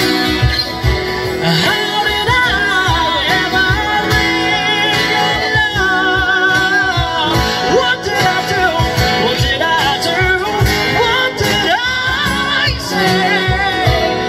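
A live band playing through a PA: acoustic guitars and a singing voice over a steady beat.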